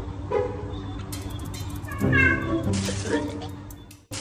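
A domestic cat meowing, loudest about two seconds in.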